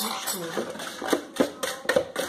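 Wire whisk stirring batter by hand in a mixing bowl, its wires clicking against the bowl in quick irregular strokes, a few clicks a second.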